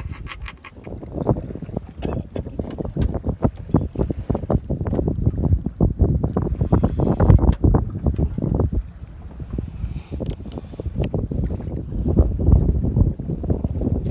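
Wind buffeting the microphone in irregular gusts, with choppy sea water slapping against the hull of a small wooden boat.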